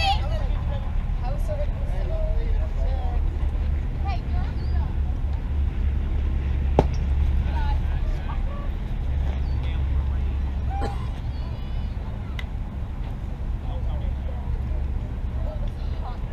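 Ballfield ambience: a constant low rumble, like wind on the microphone, under scattered distant voices of players and spectators. A single sharp knock comes about seven seconds in.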